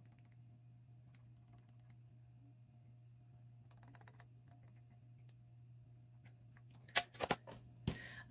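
Long fingernails tapping and clicking against pressed eyeshadow pans while fingertips pick up shimmer shadows: faint light taps throughout, then a few sharper clicks near the end.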